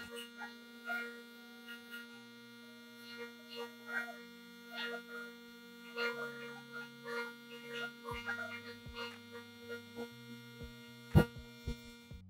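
Vibrating sieve's electric vibration motor running with a steady hum, with faint scattered short noises over it and a single sharp knock near the end.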